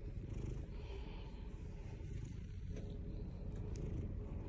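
Domestic cat purring softly and steadily, a low continuous rumble, while its head is massaged.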